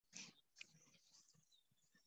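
Near silence: room tone, with a faint short sound just after the start and a tiny click about half a second in.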